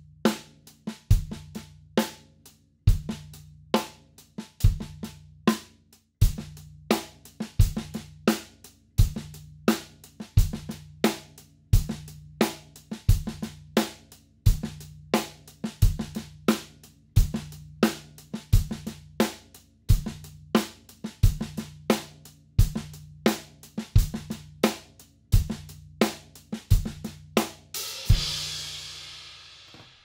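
Tama Starclassic drum kit with a copper snare and Meinl Byzance hi-hats playing an open-handed groove at a steady tempo: eighth notes on the hi-hat, snare with ghost notes, and bass drum. Near the end the groove stops on a cymbal hit that rings out and fades.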